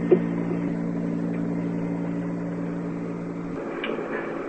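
Steady low hum over tape hiss in an old interview recording, cutting off abruptly near the end.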